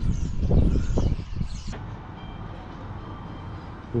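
A large flock of birds perched on a telephone line calling, in short high chirps over a loud low rumble. About a second and a half in, the sound cuts off sharply to a quieter, steady low outdoor hum.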